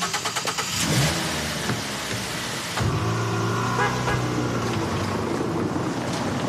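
A Mazda estate car's engine starting with a quick run of pulses, then running steadily as the car pulls away.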